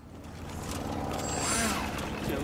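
A steady low rumble of outdoor background noise, with short high chirps over it about halfway through.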